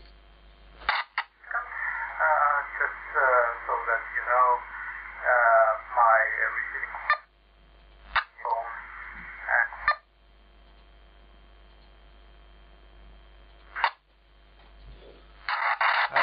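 Narrow FM voice transmission on 433.5 MHz, received by a LimeSDR-mini running QRadioLink and played through a mobile phone's speaker. A thin, band-limited voice comes through in two stretches, with short clicks as the squelch opens and closes, then a faint steady hum.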